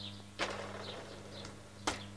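Two sharp clicks from the upturned bicycle being handled, one about half a second in and one near the end. Faint bird chirps and a steady low hum run underneath.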